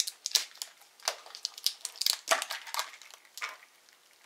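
Handling noise of a plastic cartridge box being cut open with a knife and its bubble wrap packing crinkling: a run of short clicks and crackles that dies away near the end.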